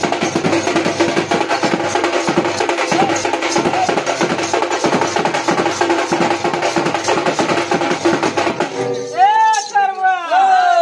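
Fast, dense drumming on large barrel drums over a held droning note. The drumming stops about nine seconds in, and a voice starts singing or calling in rising-and-falling swoops.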